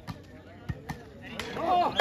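A few sharp smacks of a volleyball being struck by hands during a rally, spread over about a second and a half, followed by a man's shout near the end.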